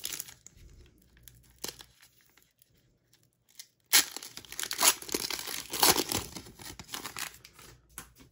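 Trading card pack wrapper being torn open and crinkled by hand. A loud crackling tear starts sharply about four seconds in, after a quiet stretch.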